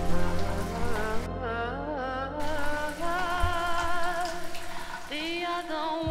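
Shower water spraying and splashing, under a slow song with a singer's wavering voice.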